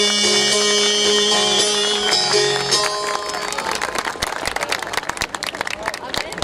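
Çifteli, the two-stringed Albanian long-necked lute, plucking the closing notes of a melody over a steady drone string; the music stops about two to three seconds in as the song ends. An audience then applauds.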